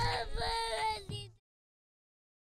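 A cartoon girl's voice crying and whimpering in a high, wavering tone, cut off abruptly about a second and a half in.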